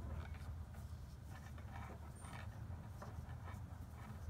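Faint, irregular soft clicks and rustles of metal double-pointed knitting needles and yarn being handled during a long-tail cast-on, over a steady low hum.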